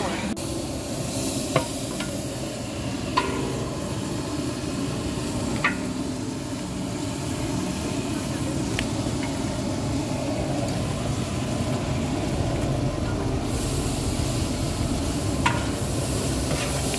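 Onion-and-tomato masala frying in oil in a large metal pot, with raw beef going in, stirred and scraped with a flat metal ladle: a steady sizzle with a few sharp clicks of the ladle on the pot.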